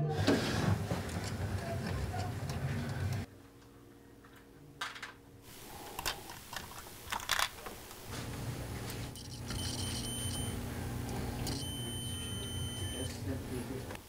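Jukebox mechanism running with a low motor hum and clicks, stopping suddenly about three seconds in. Then scattered clicks and taps from hands working inside the machine, and a steady electrical hum with a thin high-pitched tone in the last few seconds.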